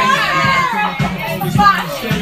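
Lively voices over music with a steady beat.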